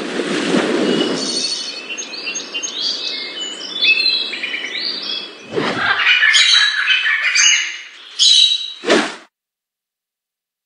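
Birds chirping and whistling in many short, quick calls, over an opening stretch of broad rushing noise. A sweeping whoosh comes about five and a half seconds in and another near the end, after which the sound cuts off.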